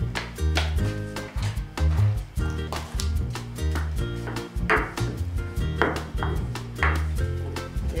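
Background music with a steady bass line, over a wooden pestle knocking and grinding pine nuts in a marble mortar. There are repeated short knocks, and a few longer grinding strokes in the second half.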